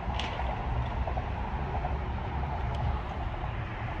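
Steady low outdoor rumble with no distinct events.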